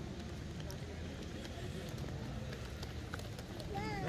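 Footsteps of someone walking along a cobbled path, over a low, steady rumble, with a few faint clicks. A voice begins right at the end.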